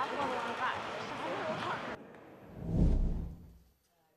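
Curling arena sound of players' voices calling over brooms sweeping the ice, cut off abruptly about two seconds in. Then a deep whooshing boom from a broadcast graphic stinger swells and fades to near silence.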